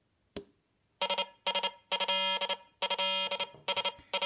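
Franzis DIY retro-sound synthesizer kit in three-oscillator mode, playing through its small speaker: a click as power is connected, then, about a second in, a buzzy electronic tone, steady in pitch, that cuts in and out in bursts of different lengths as its three oscillators interfere with each other.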